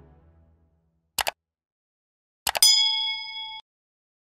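The end of a synthesized piano tune dies away. About a second in come two short clicks, then more clicks and a bright, bell-like electronic ding that rings for about a second and cuts off abruptly. These are interface sounds as the piano app's recording is stopped.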